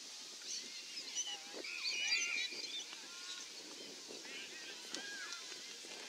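High-pitched women's shouts and calls across an open football ground during play, with one shrill held tone about two seconds in.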